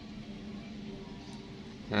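Quiet room tone: a faint, steady background hum with no distinct clicks or handling noises.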